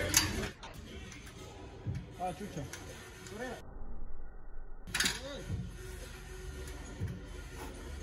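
Faint voices with quiet background music, no clear sound from the bar or the athlete.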